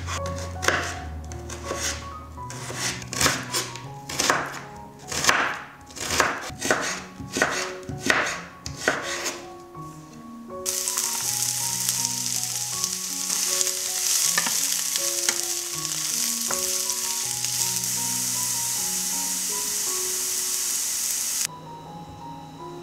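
Chef's knife slicing a carrot on a wooden cutting board, about two cuts a second. About halfway through, sliced onion and carrot strips frying in oil in a pan take over with a steady sizzle, which cuts off suddenly near the end.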